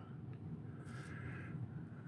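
Quiet room tone with a low steady hum and one faint, soft rustle about a second in.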